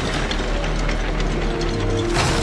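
Mining machinery sound effect: rapid mechanical clicking and clattering, like a ratcheting gear mechanism, running steadily.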